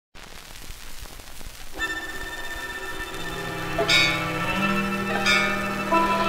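Old 78 rpm shellac record starting to play: surface hiss and crackle for about the first two seconds, then the dance orchestra's introduction begins with sustained chords, marked by two bright struck accents.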